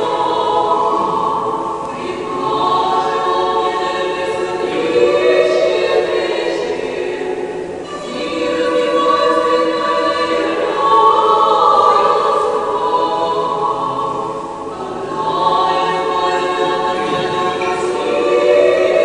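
Church choir singing Orthodox liturgical chant a cappella, in long held phrases with short breaks between them about every six seconds.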